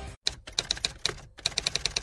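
Typewriter keys struck in a rapid, irregular run of clacks, with a brief pause a little past one second in.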